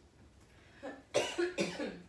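A person coughing: one short cough, then two louder coughs close together just after a second in.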